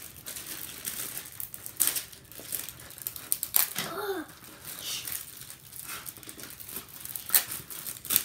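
Plastic bags and packaging crinkling and rustling as they are handled and cut open, with scattered sharp crackles.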